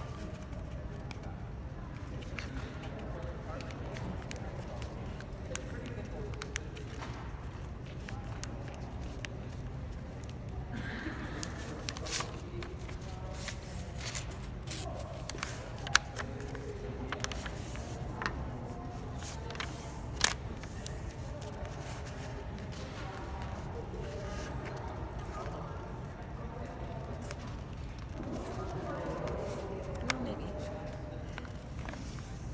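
A sheet of paper being folded and creased by hand on a wooden tabletop, with a few sharp paper snaps, over faint background voices and a steady low hum.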